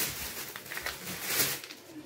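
Plastic cat food pouches rustling and crinkling as they are picked up and handled one by one.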